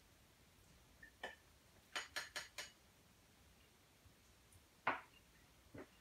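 Serving utensil clinking against a baking dish and plate as baked ziti is dished up: a couple of light taps, a quick run of four about two seconds in, and single taps near the end.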